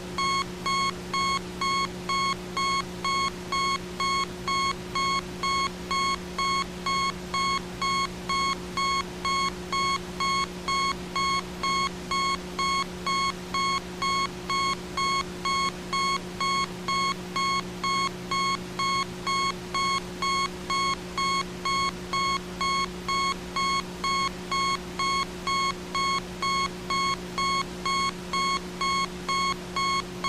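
An electronic beep at one steady pitch, repeating evenly about one and a half times a second, over a steady low hum.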